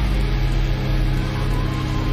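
A low, steady rumbling drone with a few faint held tones above it, from the anime episode's soundtrack.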